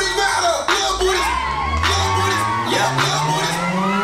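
A trap song playing loud with its heavy bass dropped out and a low tone rising steadily in pitch, while a crowd of onlookers cheers and whoops over it.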